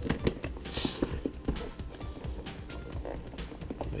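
Cardboard box being worked open by hand, with small irregular clicks and scrapes as the flap and side latch are fiddled with, over background music.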